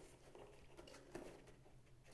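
Near silence, with faint handling sounds of fingers threading an elastic cord through a plastic bolt in a cardboard box, and a faint tick about a second in.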